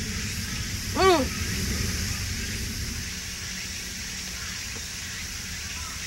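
Steady outdoor background hiss with low noise beneath it. About a second in, a single short voiced murmur rises and falls in pitch.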